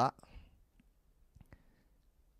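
A short pause in a man's speech, with a few faint clicks from his mouth close to a handheld microphone.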